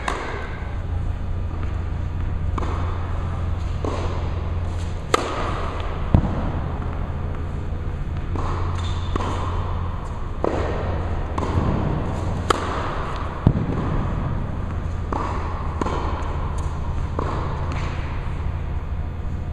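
Tennis ball being bounced on the court and struck with a racket: a string of sharp hits and bounces, a few standing out louder, over a steady low hum.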